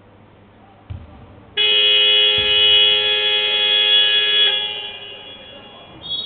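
Basketball scoreboard buzzer sounding a steady, multi-toned blare for about three seconds, which fades as it echoes through the hall. There is a dull thump just before it and another during it.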